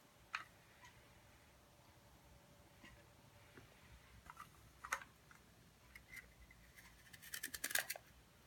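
Half a zucchini being twisted through the wider-blade side of a handheld spiral slicer, the blade cutting it into thick noodles: a dense run of quick, crisp scraping clicks near the end, after a few isolated clicks of handling.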